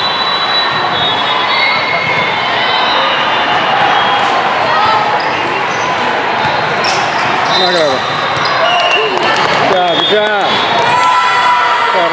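Indoor volleyball rally in a busy, echoing sports hall: ball contacts and sneakers squeaking on the court floor, with players and spectators calling out. The squeaks bunch together near the end as the point finishes.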